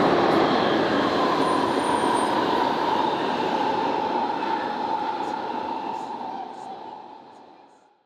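London Underground Jubilee line train in motion, heard from inside the carriage: a steady rushing noise with a whine over it. It fades out over the last couple of seconds.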